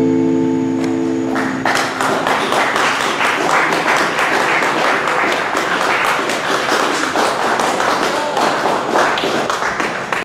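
The last acoustic guitar and mandolin chord rings out, then audience applause breaks out about a second and a half in and carries on steadily.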